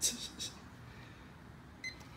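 A man's laugh trails off at the start, then near the end the Garmin Echomap Chirp 93SV fishfinder gives one short electronic beep as its power button is pressed, the unit switching on.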